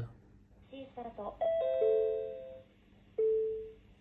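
Electronic chime from a car-auction bidding terminal. Three descending notes start one after another and ring on together for about a second, then a single shorter tone sounds near the end.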